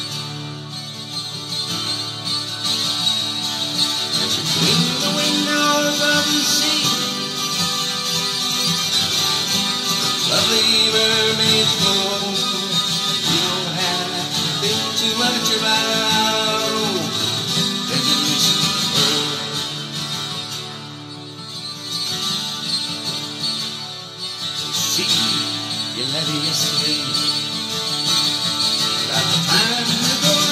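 Acoustic guitar accompaniment of a folk song, played steadily, with a melody line over it that bends in pitch in a few phrases.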